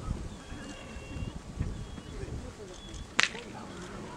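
One sharp crack about three seconds in, typical of a protection helper's stick striking a dog as it grips the bite sleeve, over a low murmur of background voices.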